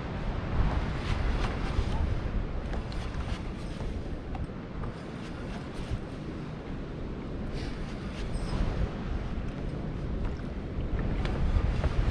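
Wind buffeting the microphone over sea water lapping around a kayak hull, with a few faint clicks and knocks scattered through.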